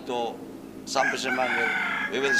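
A rooster crowing: one long call starting about a second in and still going at the end, mixed with a man's voice.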